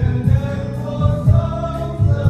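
Mixed choir of men and women singing a Vietnamese Christian worship song in harmony, over a low instrumental accompaniment.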